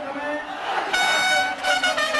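A bugle sounding a long steady note about a second in, then another held note near the end, over crowd noise.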